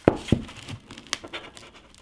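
A Surface Pro 6 tablet being bent by hand: a sharp click right at the start and another a moment later, then faint scattered crackles and creaks from its body and cracked glass screen as it flexes.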